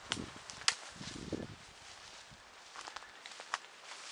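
Footsteps on rough outdoor ground, with scattered crunches and sharp clicks and a couple of heavier low thuds in the first second and a half.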